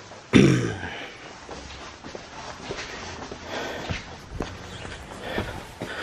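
Footsteps and the rustle and small knocks of handled parts as someone walks, opening with a short, loud sound about half a second in.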